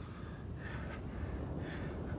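A man breathing hard while doing jumping exercises: two faint breaths, about half a second and a second and a half in, over a low steady rumble of wind on the microphone.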